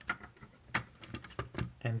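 Hard plastic clicks and taps as small toy guns are pushed into ports on a G1 Powermaster Optimus Prime toy, a few sharp clicks spread out, about half a second apart.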